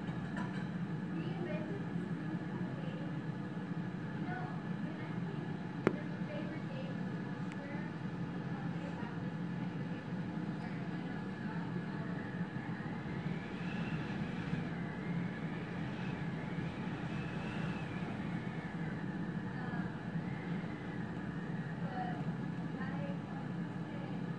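Strong wind blowing steadily across open snow, heard as an even rushing noise with a low hum under it. A faint wavering whistle rises and falls for several seconds in the middle, and there is a single click about six seconds in.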